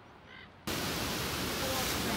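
Ocean surf breaking and washing over rocks: a steady rush of white water that starts suddenly about two-thirds of a second in, after near quiet.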